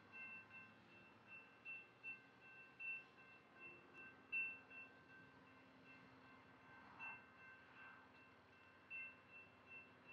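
Faint metallic chiming at irregular moments, a dozen or so soft strikes over near silence.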